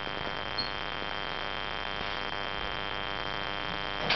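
Steady room tone: an even hiss and low hum with a faint, constant high-pitched whine.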